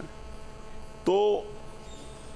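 A steady electrical mains hum carries through a pause in a man's speech, with one short spoken word about a second in.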